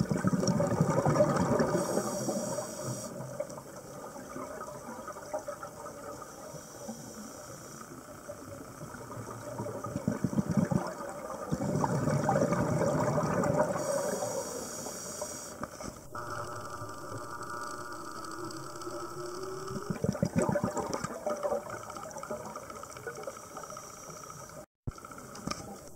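Scuba diver breathing through a regulator underwater: three loud gushes of exhaled bubbles about ten seconds apart, with a steady underwater hiss in between.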